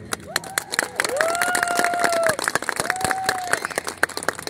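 Spectators clapping at the end of a rhythmic gymnastics routine, with a high voice calling out two long held shouts in the middle.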